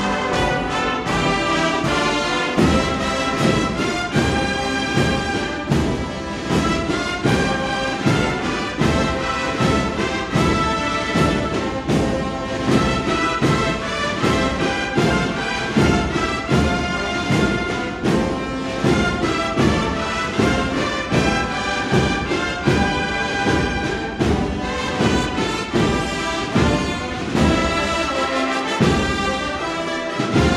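A large Spanish Holy Week brass band (an agrupación musical) playing a processional march live, massed brass over a steady percussion beat.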